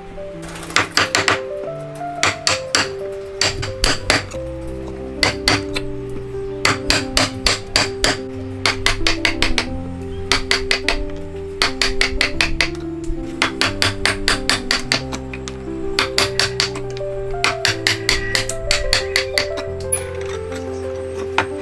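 Steel woodworking chisel being struck in quick runs of sharp taps as it cuts a joint into the end of a wooden beam, over steady background music.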